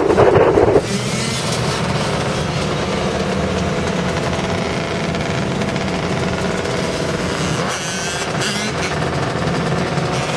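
Dirt bike and quad ATV engines running in a pack, heard from inside a following car. A loud, pulsing burst in the first second gives way to a steady engine drone.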